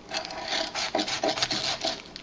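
Kitchen knife sawing back and forth through a block of ice frozen in a plastic freezer bag: a repeated rasping scrape, about three strokes a second.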